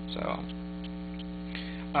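Steady electrical mains hum, a low buzz with many evenly spaced overtones, running under the recording; a man says a single "So" near the start.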